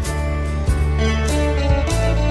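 Electric guitar playing the melody of a slow love song over a backing track of bass and drums with a steady beat.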